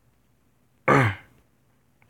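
A man clears his throat once, about a second in: a short sound that falls in pitch.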